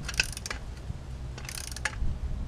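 Ratchet wrench clicking as it tightens the nut on a U-bolt exhaust clamp, in a few short runs of clicks, denser near the end, over a steady low rumble.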